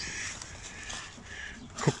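Quiet outdoor background noise with a faint bird call.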